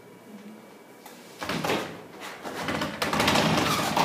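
Pull-down projection screen being tugged to release it and then rolling back up into its housing, a short sliding rattle followed by a longer, louder one that stops near the end.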